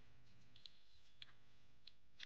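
Near silence with three faint, short clicks about half a second apart: a child's mouth chewing a fried sweet-potato cake, with soft lip and tongue smacks.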